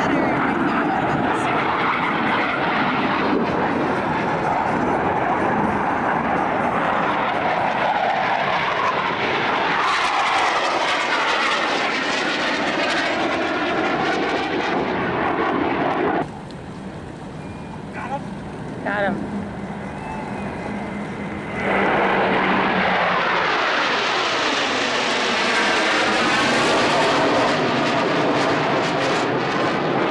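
Military jet aircraft flying low overhead: a loud jet roar that swirls and sweeps in pitch as it passes. About halfway through the roar cuts away to a quieter background for several seconds, then another jet pass builds up loud again.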